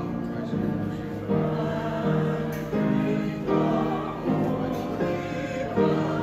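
Slow music with several voices singing together in held notes that change about once a second.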